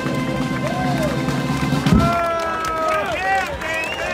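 Brass band holding a sustained chord that ends with one loud drum stroke about halfway through; then several voices shout and call out as the music stops.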